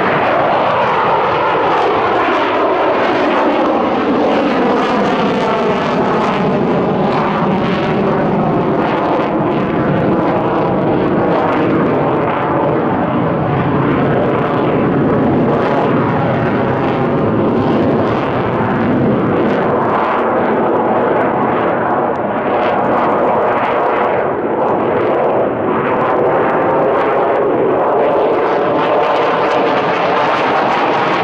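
Twin turbofan engines of a Sukhoi Su-57 fighter in a display flight, loud and continuous. The pitch falls over the first few seconds as the jet passes, then the noise holds steady with a swirling, phasing quality as it manoeuvres overhead.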